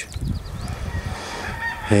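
Birds calling, a few short high notes, over a low, uneven outdoor rumble.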